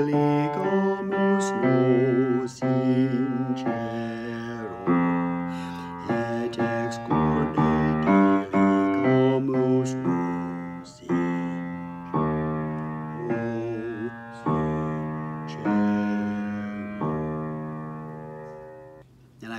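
Piano accompaniment playing a slow run of chords, each struck and left to fade, with a man's voice singing the bass line of a Latin choral piece along with it.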